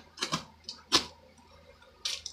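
A folding pocket knife slitting the packing tape on a cardboard box: a few short, sharp cuts, the loudest about a second in.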